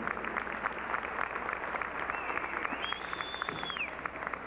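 Audience applauding, many rapid hand claps. About halfway through, a long high whistle rises a step in pitch, holds, and falls away near the end.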